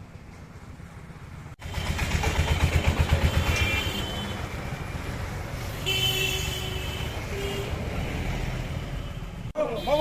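A motor vehicle engine running close by, starting abruptly about a second and a half in and throbbing strongest for the next couple of seconds, with crowd voices in the background.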